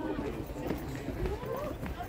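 Faint voices of people talking nearby, over a low, uneven wind rumble on the microphone.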